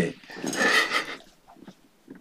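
A man's short wordless vocal sound, lasting under a second, followed by near quiet with a few faint ticks.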